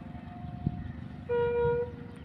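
Steady low rumble of a passenger train running on the track, with one short horn toot lasting about half a second a little past the middle.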